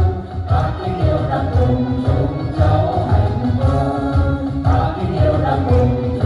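A Vietnamese patriotic song playing for a dance: a chorus of voices singing over instrumental accompaniment with a steady beat.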